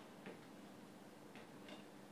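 Faint short scrapes and taps of a palette knife laying oil paint onto canvas, three in two seconds, over a low steady hum.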